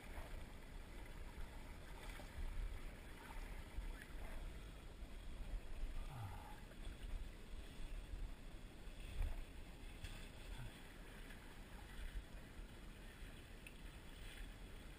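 Steady wash of a fast river's current flowing past, an even low rush with a rumble underneath.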